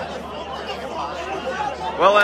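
Football crowd chatter: many spectators talking at once in a steady mix, with no single voice standing out.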